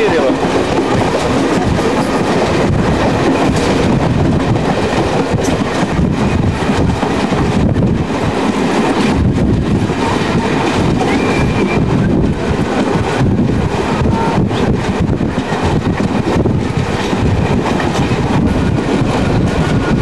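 Steady rumble and rattle of a moving passenger train heard from inside a coach by an open window or door, with wheels clicking over the rails.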